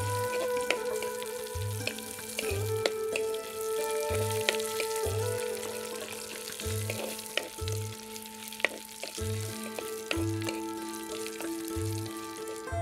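Red chilli flakes sizzling as they fry in hot coconut oil in a pot, stirred with a spatula. Now and then there is a sharp tap of the spatula against the pot. A background music track runs underneath, with held notes and a soft steady drum beat.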